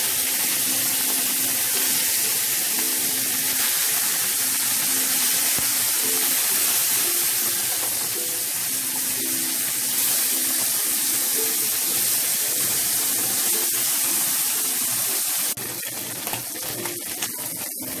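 Small tatkeni fish frying in hot oil in a non-stick pan: a loud, steady sizzle. It drops to a quieter sizzle with a few light clicks about three seconds before the end.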